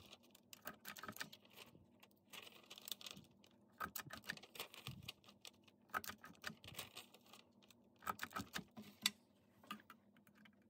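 Stampin' Up Envelope Punch Board's punch pressed down on a glassine sheet to round off its corners: faint sharp clicks and taps in small clusters, several times over.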